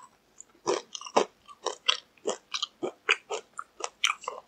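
Crisp skin of McDonald's fried chicken crunching as it is bitten and chewed: a quick run of sharp crunches, about three a second, starting just under a second in.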